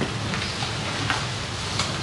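Steady hiss with a low hum under it, and a few faint ticks.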